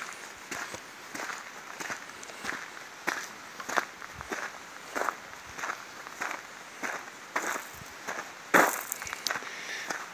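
Footsteps crunching on a gravel path at a steady walking pace, about three steps every two seconds, with one louder step near the end.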